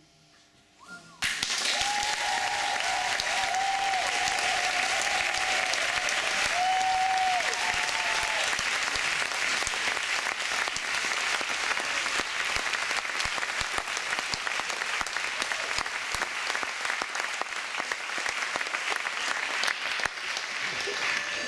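Audience applause breaking out suddenly about a second in, after a brief hush at the close of a barbershop chorus's last chord, and carrying on steadily. A single high held call rises above the clapping for the first several seconds.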